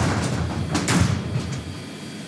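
Metal roll-up storage-unit door being pushed up: a rush of sliding noise that slowly fades, with a sharp clank about a second in.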